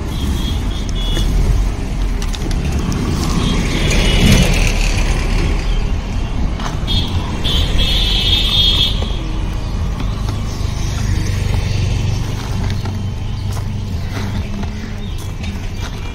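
Roadside traffic: engines of passing vehicles with a continuous low rumble, swelling to a louder pass about four seconds in. A brief high whine comes around the middle, and a steady engine hum runs through the second half.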